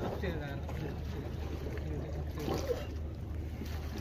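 A voice speaking briefly twice over a steady low hum.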